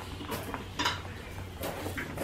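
A galvanised metal watering can being picked up and handled: a few light metallic clanks and knocks from its handle and body, about three in two seconds.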